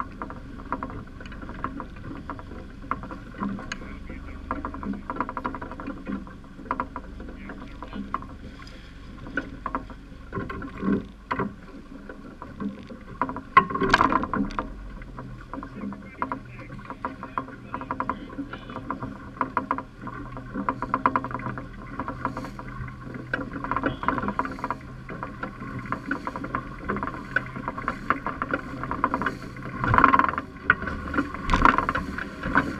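Small waves slapping against the hull of a small boat, an irregular run of small knocks and splashes over a steady wash of water and wind, with one louder slap about halfway through.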